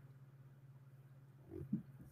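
Near silence: a faint steady low hum, with a brief faint murmur about one and a half seconds in.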